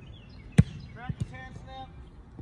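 American football punted: one sharp thud of the foot striking the ball about half a second in, followed by a fainter thud shortly after.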